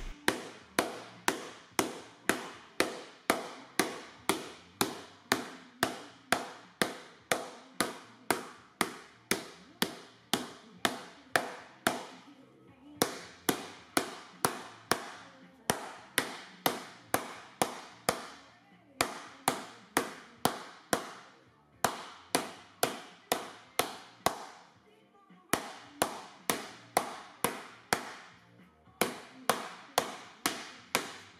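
Round hardwood mallet beating an annealed aluminium sheet on a sandbag, stretching it into a bowl shape. Sharp, even blows come about two to three a second in runs, with short pauses several times as the sheet is turned.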